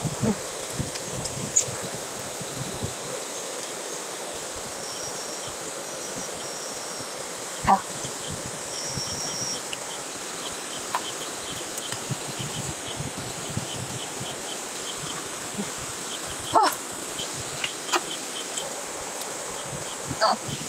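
Night insects chirping and trilling over a steady hiss, with a few sharp clicks, the loudest about eight seconds in and again past sixteen seconds.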